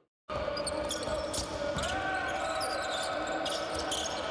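Live basketball game sound in an indoor arena: a ball dribbled on the hardwood court over steady hall and crowd noise, with short high squeaks and a held voice-like tone in the middle. It starts after a brief silence at the very beginning.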